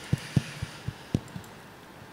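A pause in speech filled by soft, low thumps at an even pace, about four a second, over faint room hiss.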